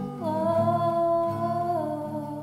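A slow song: a single voice holds long, wordless notes, stepping down in pitch twice, over soft acoustic guitar.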